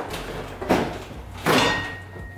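Infiniti Q50 plastic front bumper cover being pushed and fitted onto the car's nose by hand: two scraping knocks, the second louder, about one and a half seconds in.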